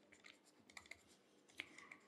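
Near silence with a few faint clicks and taps of a stylus writing on a tablet screen, one group about a second in and a small cluster near the end.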